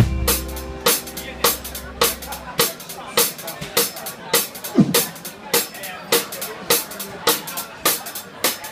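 Drum kit of a live rockabilly band playing alone: a held low chord from the band dies away about two and a half seconds in, leaving a steady snare, rimshot and bass-drum beat as a drum break.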